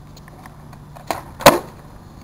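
Skateboard on asphalt during a varial flip trick: a light knock about a second in, then half a second later a sharp, loud clack of the board and wheels landing on the ground.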